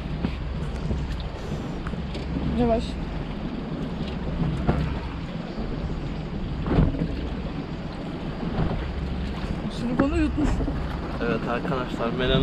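Steady low rumble of wind on the microphone aboard a small boat at sea, with a few sharp handling clicks and brief snatches of quiet voices.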